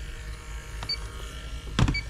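An electronic refrigerant leak detector gives a short, high beep about once a second, its steady idle signal while it detects nothing. Near the end a sharp, loud knock sounds as a detector is set down on the metal bench.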